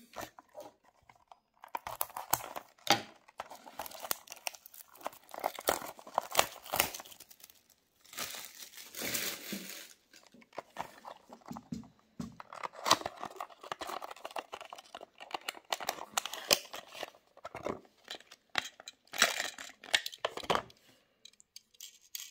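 A small cardboard Mini GT model-car box being opened by hand: irregular crinkling, tearing and clicking of the box and its plastic inner packaging, in uneven bursts as the diecast car is worked out.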